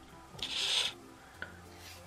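A short rubbing rustle of hand-handling noise, about half a second long, a little under a second in, followed by a faint tick.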